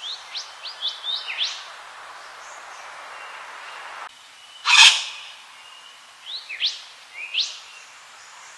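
Wattlebird calling: a quick run of short upward-sweeping notes, a single loud noisy burst about halfway through, then another run of sweeping notes near the end, over a steady background hiss.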